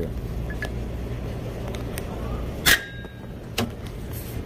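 A hand tool strikes the steel shell of a hermetic refrigeration compressor once hard, leaving a short metallic ring, and a lighter knock follows about a second later, over a steady low hum. The blows are meant to jolt the compressor's internal thermal overload, stuck open, back closed.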